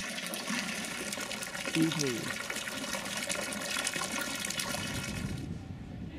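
A small garden fountain splashing: a steady spray of water falling into a stone basin, which stops abruptly near the end. A brief voice is heard about two seconds in.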